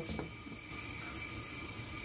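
A glass lid set down on a pot with a faint clink at the start, then a steady low hiss of salted water boiling under the lid on the hob.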